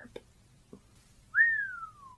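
A person giving one admiring whistle, a single note that rises quickly and then glides slowly down in pitch.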